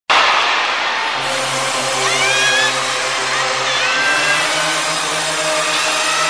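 A large arena crowd screaming and cheering in the dark, a dense, steady wall of high-pitched noise with single shrill screams rising above it now and then. A low steady note is held underneath.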